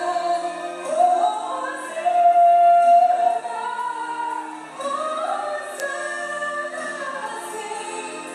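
A woman singing a Portuguese hymn into a handheld microphone, holding long sustained notes; the loudest note comes about two to three seconds in.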